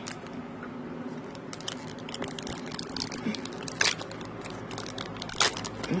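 A small thin plastic bag crinkling as it is handled and opened by hand, with many small crackles and two louder ones about four and five and a half seconds in.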